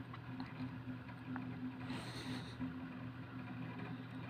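A steady low hum with faint background noise, fairly quiet, and a brief faint hiss about two seconds in.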